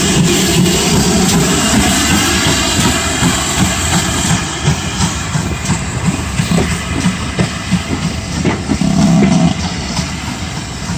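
GWR 4200 Class 2-8-0 steam tank engine pulling away with a passenger train: a steady hiss of steam with the exhaust beats of the loco. From about five seconds in, the coaches rolling past add a run of sharp clicks and knocks from their wheels.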